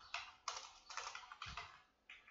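Computer keyboard being typed: a handful of faint, separate keystrokes at an uneven pace.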